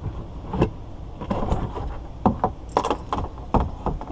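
Handling noise: a series of short clicks and knocks as a small anchor and a retractable dog leash are picked up and moved about inside a plastic kayak.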